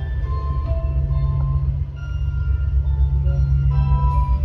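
Steady low rumble and hum of an aerial ropeway gondola in motion, with soft music of sparse, sustained notes playing over it.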